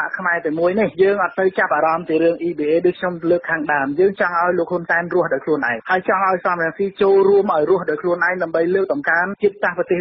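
Continuous speech: a news narration read in Khmer, with the narrow, radio-like sound of a band-limited recording.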